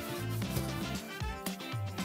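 Background music with held notes and a few sharp percussive hits.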